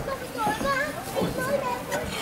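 Several children's voices talking and calling out over one another, high-pitched.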